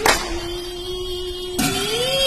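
A child singing an Assamese devotional naam chant, holding one long note that rises in pitch near the end. A brass cymbal is struck at the start and again about one and a half seconds in.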